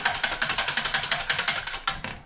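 Rapid, even mechanical clicking, about a dozen clicks a second, which stops just before the end.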